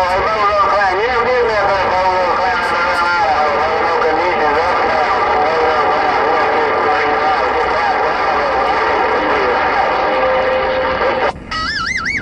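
CB radio receiving a garbled, unintelligible voice transmission over steady static hiss. Near the end the voice gives way to a short steady tone, then a brief warbling electronic beep as the transmission ends.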